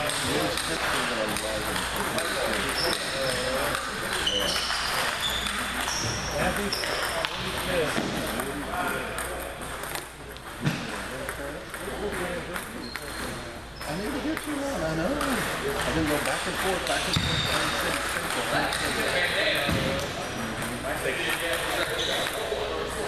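Table tennis balls clicking off paddles and tables from several tables in play at once, scattered ticks over indistinct chatter of players.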